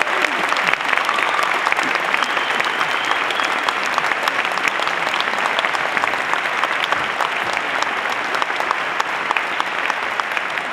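Audience applauding: many hands clapping in a dense, steady sound that holds its level throughout.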